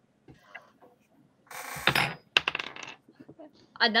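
Dice rolled for a perception check: a short rattle followed by a quick run of hard clicks as they tumble and settle.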